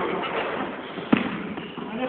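A basketball bounces once on a hardwood gym floor about a second in, a single sharp impact, with faint background voices.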